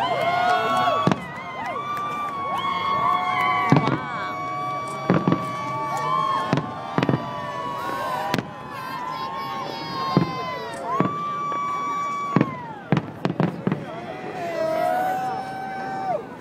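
Aerial fireworks bursting over the bay: a dozen or so sharp bangs at irregular intervals, heard through a phone microphone, with the voices of onlookers calling out between and over them.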